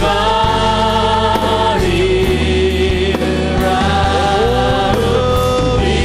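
Church worship music: voices singing long held notes over sustained chords and a steady bass.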